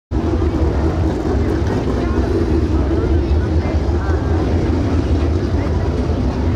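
A field of Ford Crown Victoria stock cars racing together, their V8 engines making a loud, steady drone with individual engines rising and falling in pitch.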